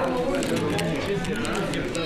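People talking over one another in a room, several voices at once with no single clear speaker.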